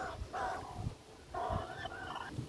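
A crow cawing twice, two harsh calls each lasting up to about a second.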